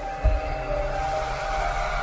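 Logo intro music: held synth tones over a rising whoosh, with a low thump a quarter of a second in.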